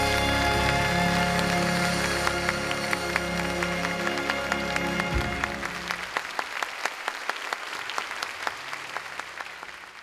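A band's closing chord, held and then fading away over the first half. Applause starts about two seconds in and carries on as the chord dies, then fades out at the end.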